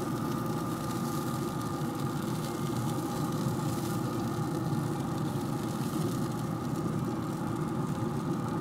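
Steady mechanical hum of a running Camp Chef SmokePro SG24 pellet grill, its fan blowing the fire, holding an even level and pitch.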